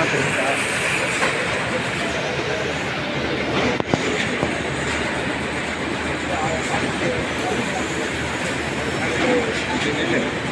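Carton packaging machine and conveyor line running: a steady, dense clatter of moving chain, rollers and guides, with one sharp click about four seconds in.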